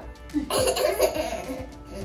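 A burst of laughter, with a child's giggling among it, starting about half a second in, over background music.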